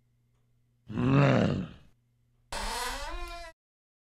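A deep, growling grunt about a second in, its pitch rising and then falling, followed by a shorter, higher-pitched vocal sound about two and a half seconds in.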